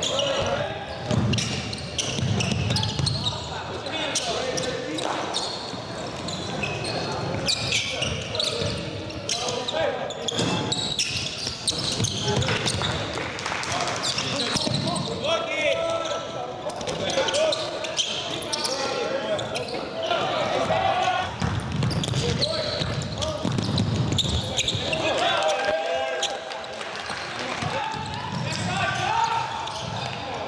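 Live game sound of a basketball game in a gym: the ball bouncing on the court now and then, under players and spectators talking and calling out.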